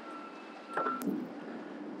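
Low, even outdoor background noise. A faint steady tone runs under it and stops with a sharp click about a second in.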